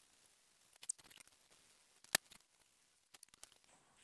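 Faint, sparse scratching and ticking of a scrub sponge worked over a stainless steel pot coated in cleaning paste, with one sharp click about two seconds in.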